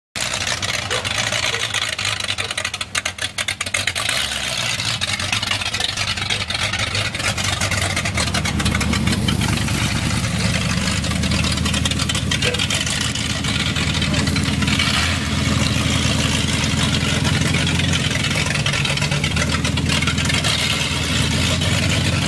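Street rod's engine running low and steady at slow rolling speed, a deep rumble that grows stronger from about eight seconds in.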